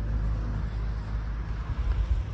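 Car driving past on the road, a steady low rumble.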